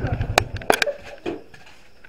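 A motorcycle engine idling with a rapid, even beat, switched off about half a second in, followed by a few sharp clicks.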